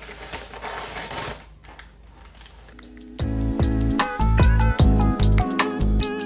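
Butcher paper crinkling as the wrap is pulled back from a cooked brisket, for about a second and a half. About three seconds in, background music with deep bass and a stepping melody starts and is the loudest sound.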